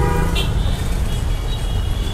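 Road traffic rumbling steadily, with thin high vehicle-horn tones over it.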